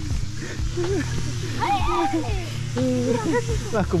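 Children's voices shouting and calling out at play, in rising and falling cries around the middle and again later on, over a steady low hum.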